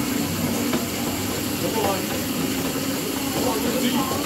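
Several arm-crank exercise machines whirring steadily under hard cranking, a continuous rushing noise with a low hum running under it.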